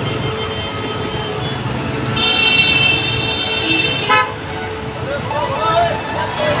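Street traffic noise, with a vehicle horn sounding high and steady for about two seconds midway, followed at once by a short second toot.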